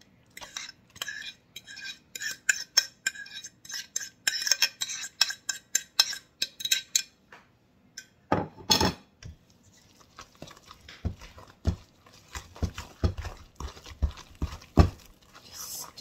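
Utensil clicking and scraping against a bowl as mashed bananas are emptied into a stainless steel mixing bowl, then one louder knock a little after eight seconds in. After that a wooden spoon stirs the thick batter in the steel bowl, with quick soft thumps of about three or four a second.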